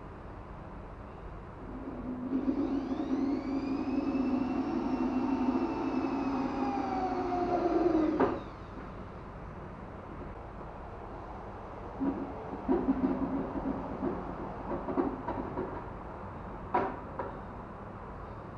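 Handheld power drill running for about six seconds, its whine rising in pitch as it spins up and sagging near the end as the bit bites, then cutting off abruptly: drilling a hole in an acoustic guitar's bridge. Later a few light knocks and clicks of tools being handled.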